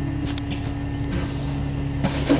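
Steady low hum and rumble of a vehicle's engine heard from inside the vehicle, with a short hiss about half a second in and another just after one second.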